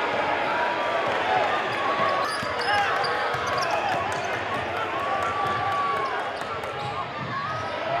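A basketball being dribbled on a hardwood gym floor amid the chatter of a crowd of spectators.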